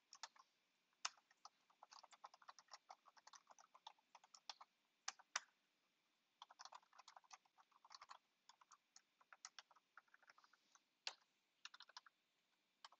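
Faint typing on a computer keyboard: quick runs of keystrokes broken by short pauses, with a few single keystrokes sharper and louder than the rest.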